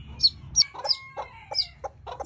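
Chickens: a newly hatched chick peeping in several short, high chirps that fall in pitch, with clucking from a hen.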